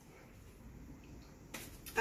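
Quiet room tone with a faint steady hiss, then a brief soft noise near the end.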